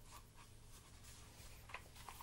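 Faint rustle and soft brushes of a picture book's paper pages being handled and turned, over a low steady hum.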